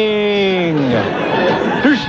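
A voice drawing out one long note that slides down in pitch for about a second, followed by a jumble of voices, with the thin, band-limited sound of an AM radio broadcast taped off the air.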